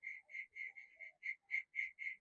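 Faint, even chirping of a calling animal, about five short chirps a second at one steady pitch.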